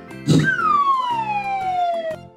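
Cartoon sound effect: a sudden poof about a quarter second in, followed by a long whistling tone that glides steadily down in pitch, over light background music.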